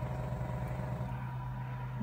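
Steady low machine hum with a faint, steady high whine above it.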